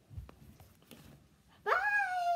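A brief low thump of handling, then quiet. Near the end a child's high-pitched voice starts a long note that rises in pitch and holds.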